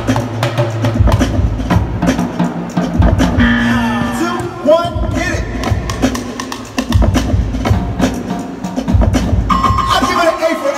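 Live street percussion show: several performers beating drums and black barrel drums with sticks, over loud backing music.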